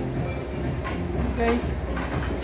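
Steady low rumble of indoor restaurant background noise, with a brief spoken "okay" near the end.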